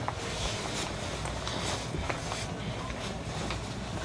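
Low room noise with a few faint, short knocks and rustles spread through it.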